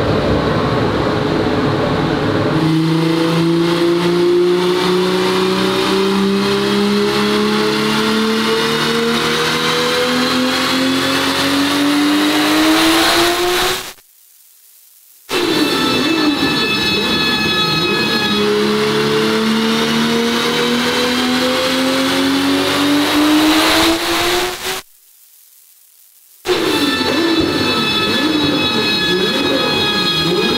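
Turbocharged VR6 engine of a front-wheel-drive Mk2 VW Golf making two full-throttle pulls on a chassis dyno. Each pull climbs steadily in pitch for about ten seconds, then cuts off abruptly, followed by a wavering, see-sawing drone.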